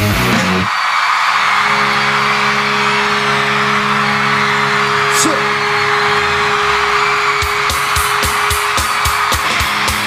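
A rock theme cuts off under a second in, giving way to a concert crowd cheering and screaming over a steady held drone. From about seven seconds in, a steady beat of sharp hits comes in, about three a second.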